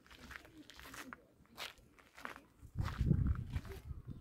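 Footsteps and scattered rustles and clicks from a hand-held camera on a selfie stick being carried along, with a louder low bump of handling noise about three seconds in.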